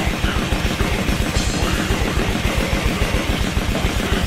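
Death metal drumming on a full drum kit: a fast, even stream of double-bass kick drum strokes under cymbals, with heavy metal music playing along.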